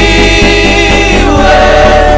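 Live gospel worship song: a woman sings the lead into a microphone with backing singers and instrumental accompaniment. The voices hold one long note that slides downward about halfway through.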